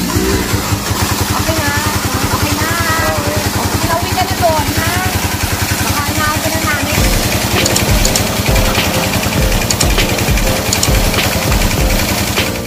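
Small stationary engine running steadily with a fast, even firing beat, driving a water pump whose outlet gushes a heavy stream of water onto the ground.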